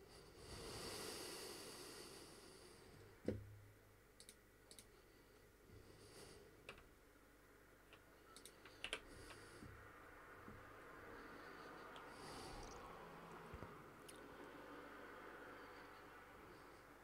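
Near silence: faint room tone with a few scattered soft clicks from a computer keyboard and mouse, and a soft hiss in the first two seconds.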